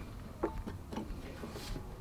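A few faint ticks and light knocks from an acoustic guitar being handled between songs, over quiet room hiss.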